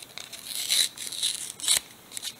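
A Pokémon trading card being torn by hand, with a rasp of tearing card stock about half a second in and a shorter one near the end.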